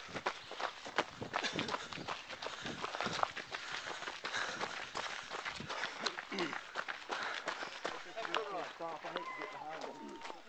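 Running footsteps on a dirt trail, heard as a run of irregular thuds and crackles, with the handheld camera knocking and rubbing as it jolts along; faint voices come through in the second half.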